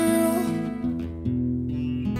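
Takamine acoustic guitar strummed, chords ringing, with a change of chord about a second in.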